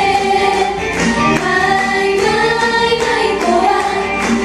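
Four kimono-clad geisha singing a song together in unison into handheld microphones, their voices amplified through a sound system.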